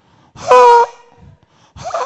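A man's single short, high-pitched exclamation "Ha!" into a microphone, held on one steady pitch for about half a second.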